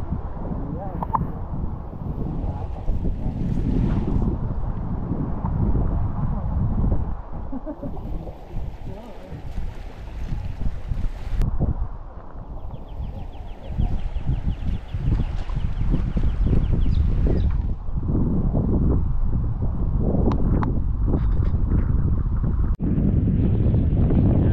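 Wind buffeting the microphone in uneven gusts, with indistinct voices of people in the background. A brief rapid high ticking is heard about halfway through.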